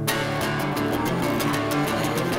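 Electric dombra strummed rapidly in a dense run of quick strokes over steady low notes, starting abruptly.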